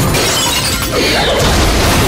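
Action-trailer sound mix: dramatic music under fight sound effects, with a loud crash of something shattering.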